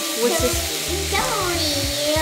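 Chopped onion, celery, carrot and garlic sautéing in oil in a pot, a steady sizzle, under background music.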